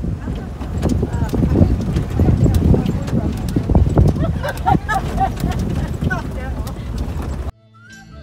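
Jeep jolting along a rough dirt track: engine and tyre noise under repeated knocks and rattles from the body and suspension. Near the end it cuts off suddenly.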